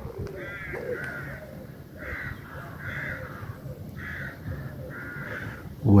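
A bird calling over and over outdoors: about eight short calls of roughly half a second each, spread through the few seconds.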